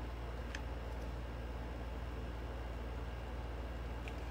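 Steady low hum with faint hiss, and a single faint click about half a second in.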